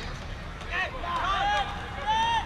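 Short raised voices calling out over the steady low noise of a football stadium.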